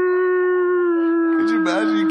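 A person's voice holding one long, steady wailing note in imitation of whale song, sinking slightly in pitch. About one and a half seconds in, another voice starts talking over it.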